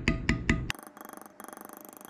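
A few light taps of a metal beveler being struck with a mallet on tooling leather in the first moment, beveling very lightly. Then faint background music.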